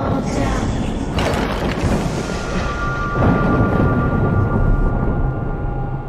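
Loud thunder-like rumble with rushing noise, a horror sound effect, swelling in the middle. Eerie held tones of scary soundtrack music join it about two seconds in.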